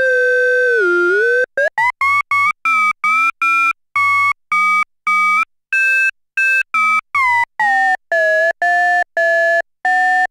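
Korg Monologue analogue synthesizer with its ring modulator on VCO2 and triangle waves on both oscillators, giving a clangy, inharmonic tone. It starts with a held note whose pitch slides down and back up as VCO2 is detuned. From about a second and a half in it plays short repeated notes, about three a second, and their weird, strange harmonics shift as the detune is set for a metallic, bell-like percussion patch.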